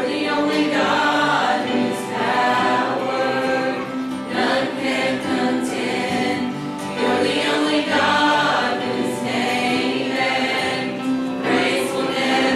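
Church choir of mixed men's and women's voices singing together, in long held phrases with brief breaks between them.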